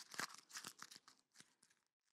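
A sheet of paper crumpled by hand into a small ball: a run of irregular crackles that thin out and stop about a second and a half in.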